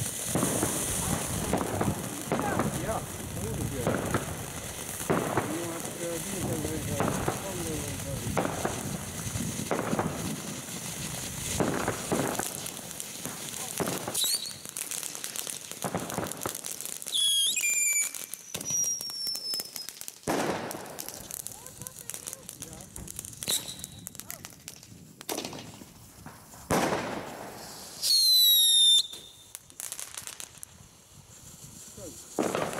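Ground fireworks fountains spraying sparks with a dense crackling hiss and many sharp pops. Later come short high whistles that fall in pitch, and a few single loud cracks; the loudest whistle comes near the end.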